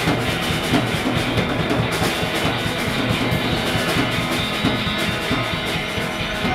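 Live rock band playing: drum kit, electric guitars and keyboard together, loud and steady with a driving drum beat.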